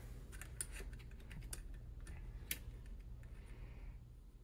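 Faint, irregular light clicks and taps of small metal parts as an AR-style rifle's ejection port dust cover is worked onto the upper receiver over its partly inserted hinge rod. The sharpest click comes about two and a half seconds in.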